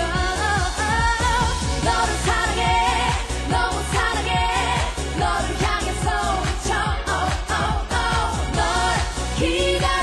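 K-pop song with female vocals singing melodic lines with vibrato over a steady dance beat.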